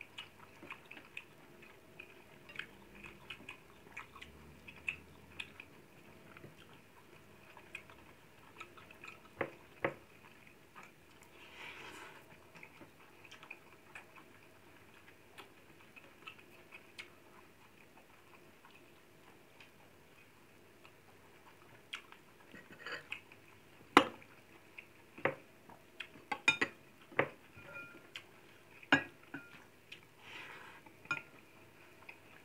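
Close-miked chewing and mouth sounds of a person eating rice by hand, with scattered small clicks. In the last several seconds there are sharper clinks and knocks of a spoon against ceramic dishes.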